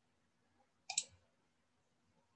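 A single computer mouse click about a second in: a sharp press and release close together, heard against quiet room tone.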